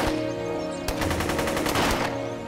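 Rapid automatic gunfire in quick runs of shots, over a steady music score of held notes. A few heavier low thumps stand out, near the start, about a second in and near the end.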